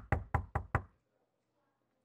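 Knuckles knocking on a door: five quick, evenly spaced knocks about a fifth of a second apart, over within the first second.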